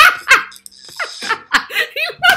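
A woman laughing hard in a string of loud, short bursts.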